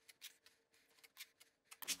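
A few short, faint scrapes of a steel putty knife working plaster over a wall patch.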